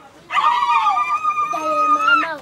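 Several people, most likely women, ululating in welcome: long, high, trilling cries held for over a second, overlapping one another.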